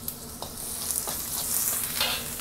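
Chopped garlic, ginger and spring onion whites with black pepper sizzling in hot oil in a wok while being stirred with a perforated metal skimmer. The sizzle grows louder toward the end, with a couple of light taps of the skimmer on the wok near the start.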